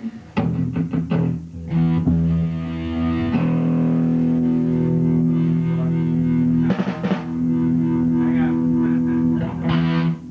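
Live band music: electric guitar and bass play a few short strummed stabs, then hold a long, ringing chord, with a fresh strum partway through.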